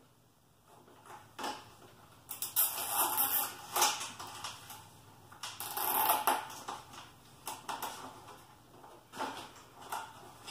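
Plastic scraping and clicking as a PVC-pipe latch is worked into place against a plastic milk crate, in irregular rasping bursts from about two seconds in and again around six seconds, with scattered clicks after.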